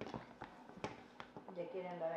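A few light clicks and taps of a knife against the cake plate as a cake is cut and a slice lifted out, then a faint, low, steady hum of a voice for about a second near the end.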